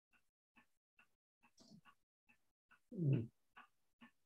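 Faint scattered clicks, then about three seconds in a short, low vocal sound that falls in pitch.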